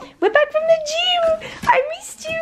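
French bulldog puppy whining in high, wavering cries at a greeting: one long cry of about a second, then a short rising one near the end.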